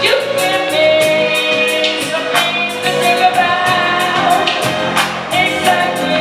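Live band performance: a woman singing into a microphone, backed by electric guitar, bass guitar, drum kit and keyboards, with steady drum and cymbal strikes under the voice.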